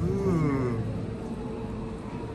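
A single animal-like call that rises and then falls in pitch, lasting under a second, over a steady low background rumble.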